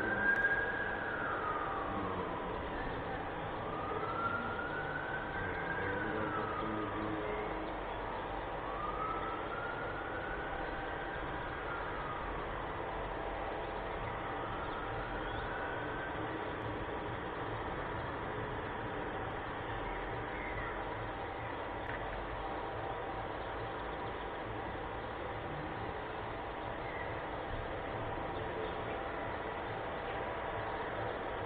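A siren wailing in slow rising-and-falling sweeps, about one every four seconds, dying away about halfway through. A steady background hum with faint steady tones remains.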